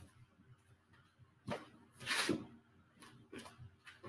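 Faint swishes of a martial arts uniform and bare feet moving on a training mat as a step, punch and spinning back fist are thrown. The loudest swish comes about two seconds in, with a few small taps near the end.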